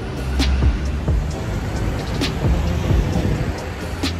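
Background music with a deep bass line and a sharp hit roughly every two seconds, each followed by a falling low boom.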